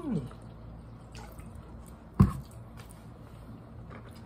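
Soda pouring from a plastic bottle into a foam cup. There is one sharp knock about two seconds in.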